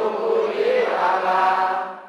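Buddhist verse chanting: one long drawn-out chanted line with a slightly wavering pitch, fading out near the end.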